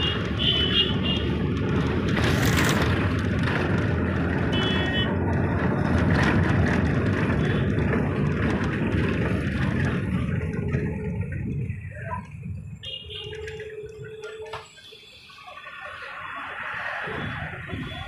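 Engine and road noise heard from inside a moving road vehicle: a loud, steady rumble for the first ten seconds or so, falling away about twelve seconds in as the vehicle slows, then picking up again. Short bursts of rapid high beeping from horns cut in several times.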